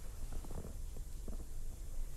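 A low, steady rumble of background noise with a few faint short ticks.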